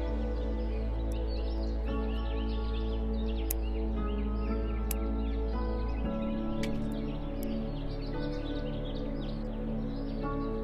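Slow ambient background music of held chords that change every couple of seconds, with a deep bass note that shifts about six seconds in. Many quick bird chirps run throughout over the music.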